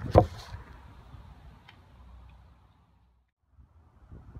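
Handling noise of a phone being set down: one sharp knock right at the start, then a low rustle that fades, with a faint click about a second and a half in.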